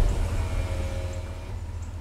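Ford police cruiser's engine idling with a steady low rumble, easing off after it has just been started and revved.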